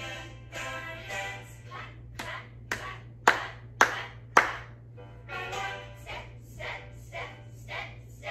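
Five sharp hand claps, about two a second, over a children's song about keeping a steady beat. The claps come a couple of seconds in, and the last three are much louder than the music.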